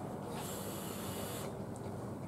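Hiss of a brass mechanical vape mod being fired and drawn on, air pulled through the atomizer over the hot coil, lasting about a second from about half a second in.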